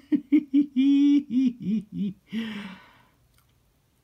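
A man laughing: a string of short laughs, one held a little longer, trailing off about three seconds in.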